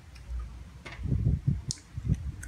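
Soft clicks and low mouth noises of someone eating sticky rice and grilled fish by hand, with a sharper click near the end.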